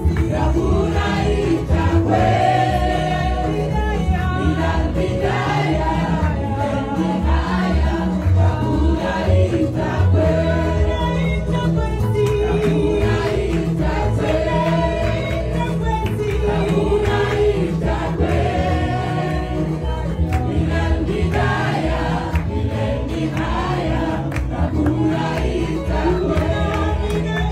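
South Sudanese gospel choir of women singing together into microphones over amplified backing music with a steady bass line.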